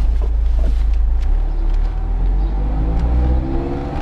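Car engine running under way in an open-top roadster, with a steady low rumble; about halfway through its note rises gradually as the car accelerates.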